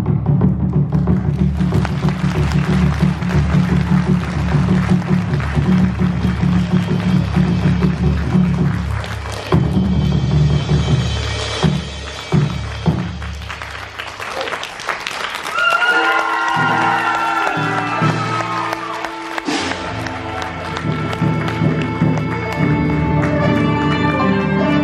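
Large Chinese war drum beaten with two sticks in a fast, continuous roll for about nine seconds, then a handful of separate heavy strokes. From a few seconds past the middle, melody instruments take over with long, sliding notes.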